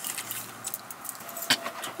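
Stacked beaded bracelets lightly clicking and clinking on the wrists as the hands are pressed and rubbed together, with one sharper click about one and a half seconds in.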